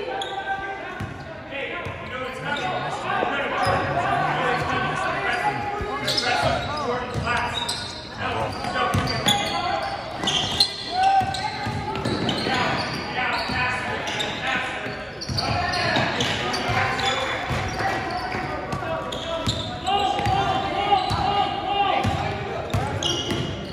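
Basketball dribbled and bouncing on a hardwood gym floor during a game, with players and spectators calling out in the echoing hall.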